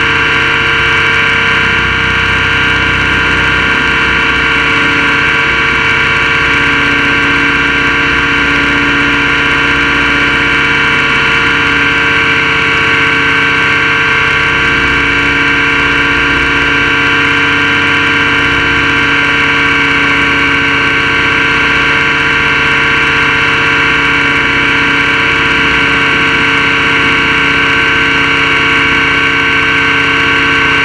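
Align T-Rex 600E electric RC helicopter in flight, heard from its own onboard camera: the motor, drive gears and rotor make a loud, steady whine of several pitches that holds level throughout.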